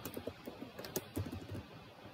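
Computer keyboard typing: a quick run of key clicks that thins out in the second half.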